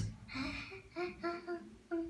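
A young girl humming a string of short, level notes with her mouth closed, rather than saying the word.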